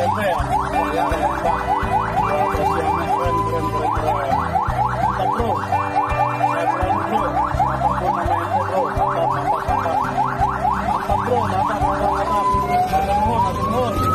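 Fire engine siren in fast yelp mode, rapid rising sweeps several times a second, with a short steady tone about four seconds in, changing to a slow rising wail near the end.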